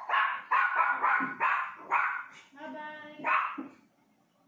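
A dog barking: about six quick barks in the first two seconds, a longer drawn-out call holding one pitch, then one more bark.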